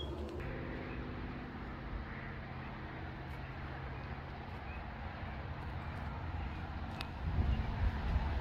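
Steady low hum of a vehicle engine running, with a sharp click about seven seconds in.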